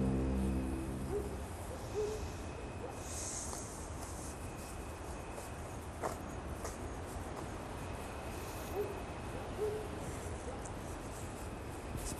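Two pairs of short, low hoots over a steady background hiss: one pair near the start and one a few seconds before the end. Music fades out in the first second.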